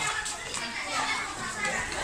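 A group of young children playing together, many high voices calling and chattering over one another.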